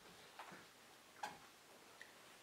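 Near silence: quiet room tone with two faint ticks, one about half a second in and one just past the middle.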